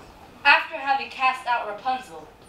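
A girl's voice speaking a line, starting about half a second in, in quick, clearly separated syllables.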